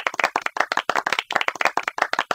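Studio audience clapping: a quick run of separate, sharp claps.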